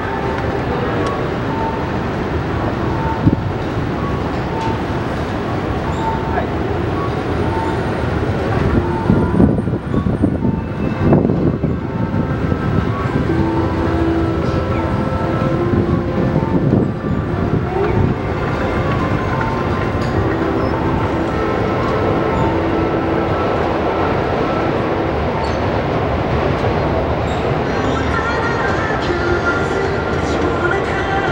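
Busy city street ambience: a steady wash of traffic and rail noise with passers-by's voices. A short beep repeats about once a second through the first several seconds.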